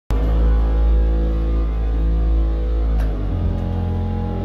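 Live amplified band music: a loud, sustained low bass drone under held chords, with no singing, the bass note shifting a little after three seconds.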